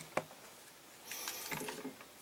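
A faint sharp click, then about a second later a soft, brief stretch of faint clicking and rustling from handling at the bench.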